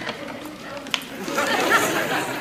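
Studio audience laughing, starting about a second in just after a short knock and building toward the end.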